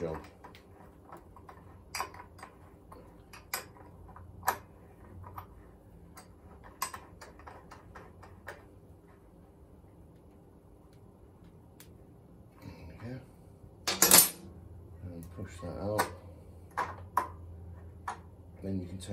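Spanners clinking on the steel axle nut and hub of a moped's rear wheel as the 17 mm axle lock nut is worked loose: sporadic sharp metallic clicks, with a louder rattling clatter about three-quarters of the way through.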